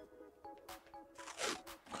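Masking tape crackling a few times as it is pulled from the roll and pressed along the edge of a steel car door, about halfway through and again near the end, over faint backing music.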